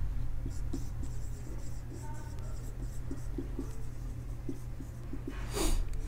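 Marker pen writing on a whiteboard: a string of short strokes over a low steady hum, with a louder rush of noise near the end.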